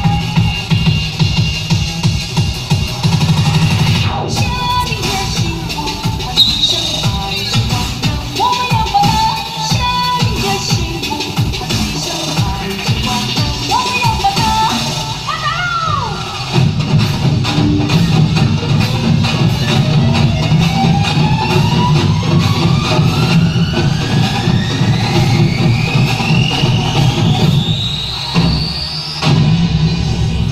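Loud dance music with a heavy, steady beat. From about halfway through, a long rising sweep builds, then breaks off briefly near the end.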